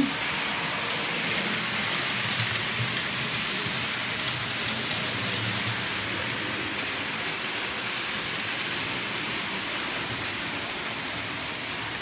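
OO gauge model trains running on the layout's track: a steady whirring rattle of small motors and wheels on rails.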